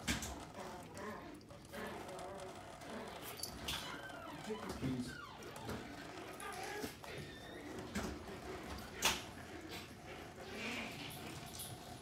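A thin stream of tap water trickles into a stainless steel sink while a long-haired cat laps at it. There is a single sharp click about nine seconds in.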